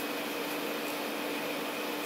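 Steady background hiss with a faint constant hum: room tone, with no distinct handling sounds.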